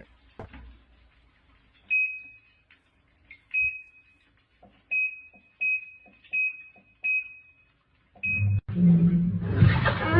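Top-loading washing machine's control panel giving short high beeps as its buttons are pressed, about seven in all, several seconds apart at first and then closer together. Near the end the machine starts up with a loud rushing noise over a low hum.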